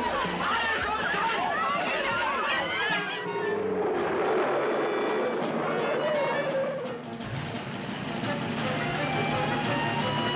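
Film trailer soundtrack: many people shouting and screaming at once over music, cut off abruptly about three seconds in. Dramatic orchestral music follows, settling into steady held notes for the last few seconds.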